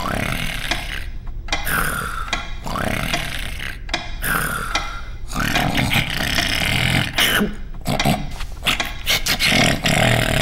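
A cartoon creature's wordless voice: a run of breathy gasps and strained 'ah' sounds as a feather tickles his nose, the wind-up to a sneeze that he stifles with his hand.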